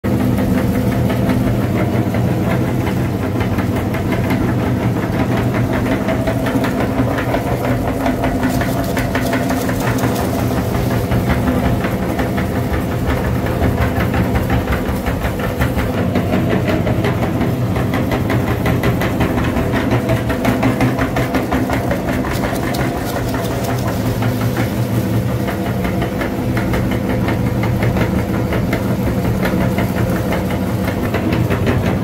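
Meat grinder running with a steady motor hum, a dense crackle running through it as crunchy yellow snack food is ground into crumbs.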